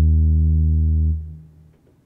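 Yamaha Montage M6 synthesizer sounding one steady, low, held note that stops about a second in and dies away quickly, leaving near silence.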